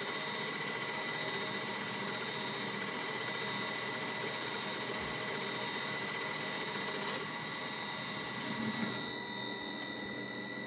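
Metal lathe running and turning a metal eccentric with a cutting tool, a steady machine whine with a high fixed tone. About seven seconds in the sound drops suddenly and falls again near nine seconds as the spindle comes to a stop.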